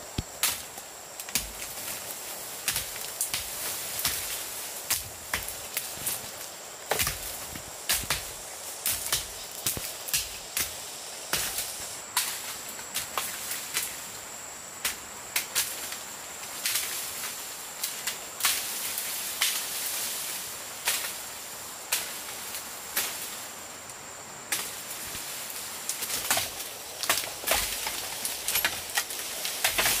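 Dry bamboo leaves and dead brush crackling and rustling in many irregular crunches as people push and step through the undergrowth. A steady high insect drone runs underneath.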